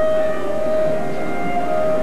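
Theatre pit orchestra holding one sustained note under the dialogue, steady in pitch with its overtones.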